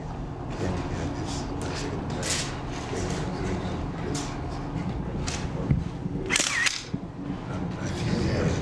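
Press cameras' shutters clicking now and then over a low murmur of voices in a room, with a longer, louder burst of clicks about six and a half seconds in.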